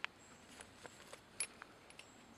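Faint handling of a plastic Ziploc bag holding stove parts: a few soft, short clicks and rustles, the clearest about one and a half seconds in.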